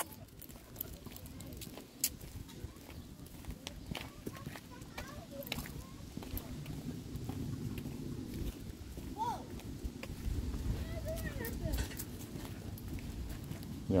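Footsteps and a dog's paws on a concrete sidewalk during a leashed walk, with scattered light clicks over a low rumble.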